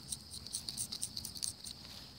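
Faint, irregular scratchy ticks of a stylus moving over a tablet touchscreen while erasing handwriting, mostly in the first second and a half, over a steady faint high-pitched hum.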